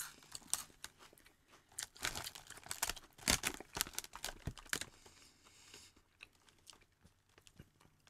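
Crisps crunching as they are chewed, in irregular crunches that bunch up in the middle, with a foil crisp bag crinkling as a hand reaches into it.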